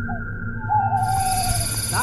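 A held eerie music tone, over which a single wavering call sounds for about a second, sinking slightly in pitch. About halfway in, a steady high-pitched chorus of night crickets comes in.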